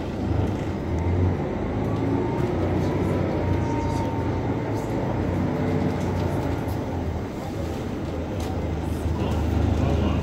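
Volvo B10BLE city bus under way, heard from the passenger cabin: a steady low drone from the engine and ZF automatic gearbox, with a faint gearbox whine in the first few seconds.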